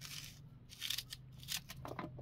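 Kitchen knife slicing through a raw white onion held in the hand, three crisp cutting strokes about half a second apart.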